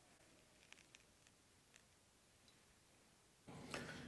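Near silence: room tone with a few faint mouth clicks in the first two seconds while a sip of bourbon is held and tasted, and a faint rising noise near the end.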